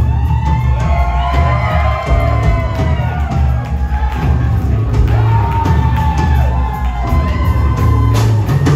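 Rock band playing live, with drums and bass holding a steady groove, while pitched lines bend up and down over it and voices in the crowd whoop and shout.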